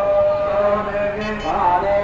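A voice chanting in long held notes, with a slide in pitch about one and a half seconds in, over a steady low drone.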